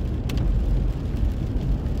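Steady low rumble of car road noise heard from inside the cabin, with a couple of faint clicks about a quarter second in.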